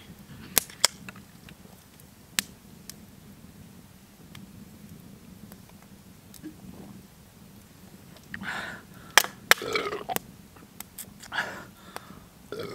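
Fire burning in a metal fire barrel, crackling with sharp, scattered pops. From about eight seconds in come a few short, breathy noises from the man drinking.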